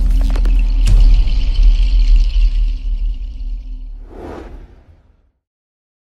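Cinematic logo-intro sound design: a deep bass rumble with a sharp hit about a second in and a high shimmering tone over it. A whoosh comes about four seconds in, and it all fades out just after five seconds.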